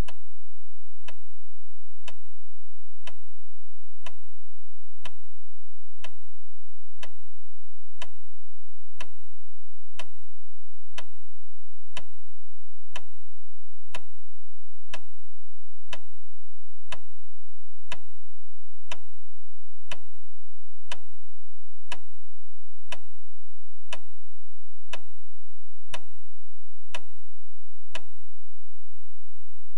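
Clock ticking steadily, one sharp tick each second, over a faint low hum.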